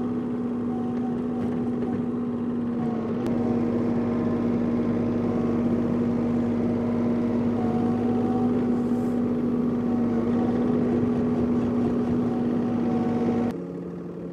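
Compact diesel tractor engine (John Deere 3046R) running steadily at constant throttle while pushing snow with the loader bucket, a continuous drone at one unchanging pitch. It cuts off abruptly near the end.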